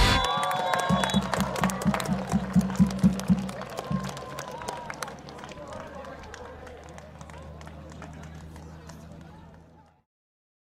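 Live sound from a soccer pitch. A referee's whistle blows a long blast that stops about a second in, with players shouting. A quick rhythmic pulse, about four beats a second, runs from about one to four seconds in. The whole scene then fades out to silence near the end.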